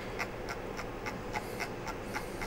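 Computer mouse scroll wheel ticking as code is scrolled: a handful of short, irregularly spaced clicks.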